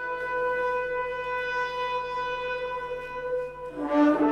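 Music: a single steady note held for about four seconds over a fainter low drone, like a long sustained horn or synth tone. Near the end, gliding pitched sounds come in.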